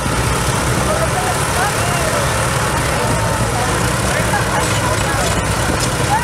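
Engines of a Scammell truck and a line of Fordson Major tractors running steadily under heavy load as they pull against each other in a tug of war. The low rumble stays even throughout, with faint distant voices over it.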